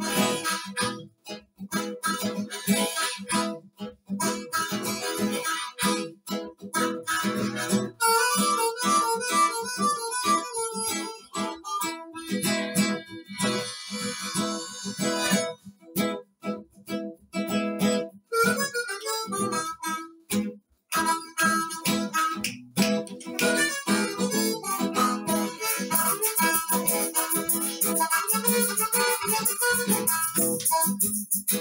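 Two diatonic blues harmonicas playing together over a rhythmically strummed acoustic guitar, an instrumental break with no singing.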